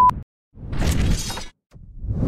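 Edited-in glass-shatter sound effect, two noisy crashes of about a second each, following a steady beep tone that cuts off just as the first crash sets in.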